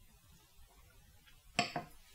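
A Glencairn whisky glass set down on a coaster on a wooden table: two quick knocks near the end with a brief glassy ring.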